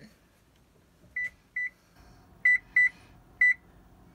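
Electronic oven control panel beeping as its keys are pressed to set the temperature: five short beeps of one pitch, a softer pair, then a louder pair and a single one. A faint steady hum comes in about halfway through.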